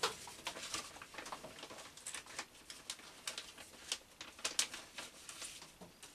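A plastic packet crinkling and thin steel shims clicking against each other as a shim is taken from a shim pack; a scatter of light, irregular clicks, the sharpest a little before the end.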